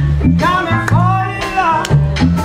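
A blues band playing live: a bass line under a steady beat, with a lead melody line that bends and slides in pitch over it.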